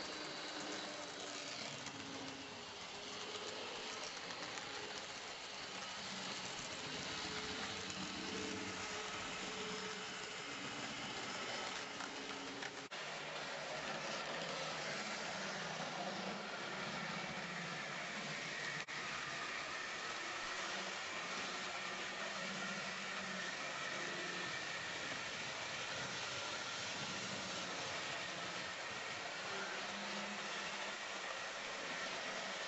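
Model electric train running on the layout's track: a steady whir of the small motor and wheels running over the rails, with faint steady whining tones. The sound drops out for an instant twice, a little under halfway and about two-thirds of the way through.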